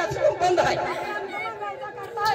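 Speech: men's voices talking, with crowd chatter.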